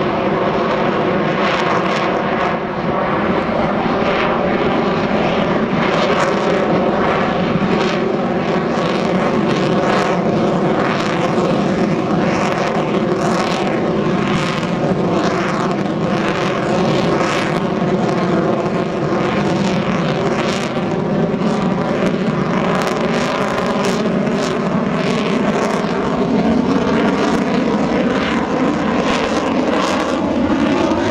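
Sukhoi Su-30MKM fighter jet's twin AL-31FP turbofan engines running loud and steady through a display manoeuvre. It is a dense rushing noise with several tones that drift slowly up and down in pitch, and a rough flicker higher up.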